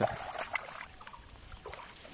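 Bare feet wading through shallow muddy water, with faint sloshing and splashing steps.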